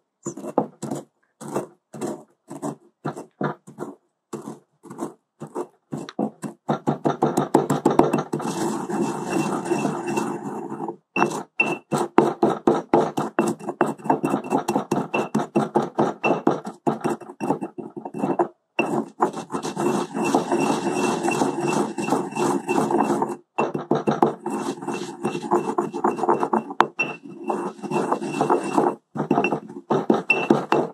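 Stone mortar and pestle (molcajete) grinding dried cochineal insects: at first separate crushing strokes, a few a second, then from about seven seconds in a continuous stone-on-stone circular grinding with a few short pauses.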